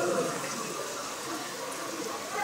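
Rain falling steadily onto standing water, an even hiss of many drops striking the surface.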